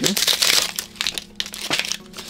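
Plastic blister packaging crinkling and crackling as it is torn open by hand to free a sticky toy alligator. The crinkling is densest in the first second, then thins to a few sharp crackles.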